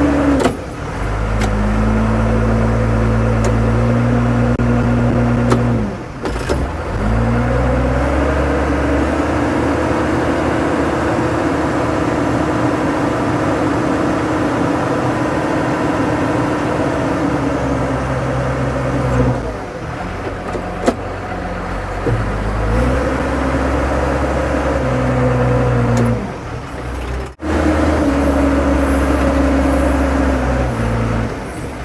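Diesel engine of a JCB 714 articulated dump truck running, its revs stepping up and down as it backs onto the dam and tips its load of dirt. It holds higher revs for about ten seconds while the bed raises.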